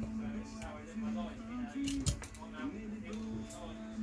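Quiet background music with sustained notes, and a few sharp metallic clicks about two seconds in as a magnetic screwdriver works a retaining screw out of a rifle's bottom plate.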